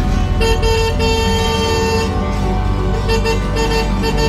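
Motorcycle or scooter horns honking in congested street traffic: one long blast starting about half a second in, then several short toots near the end, over a steady rumble of engines.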